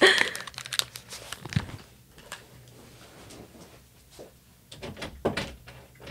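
Handling noise of headphones being pulled off close to the microphone, then scattered knocks, clicks and shuffles of a person getting up from a chair and moving about a small room. A low thump comes about one and a half seconds in, and a louder cluster of knocks and rustles comes near the end.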